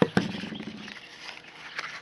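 Two sharp knocks in quick succession as the camera bumps against the tube tester's leatherette-covered case, the second followed by a brief low hum. Faint chirping runs in the background.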